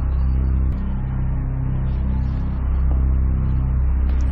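Background music of low, held bass notes that shift pitch every second or so.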